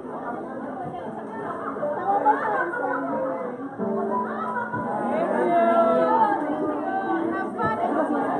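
Many people talking at once in a large hall, with music playing underneath; the talk grows louder toward the end.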